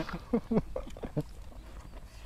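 A few short, soft chuckles from men in a lull between jokes.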